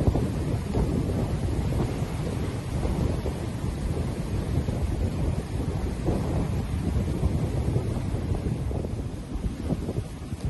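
Wind buffeting the microphone as an uneven low rumble, with small waves washing onto the shore beneath it.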